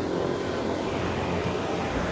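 A steady, low engine rumble of passing motor traffic or an aircraft overhead, holding an even level throughout.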